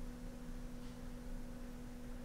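Soft background music holding one steady, unchanging note, with a fainter tone above it.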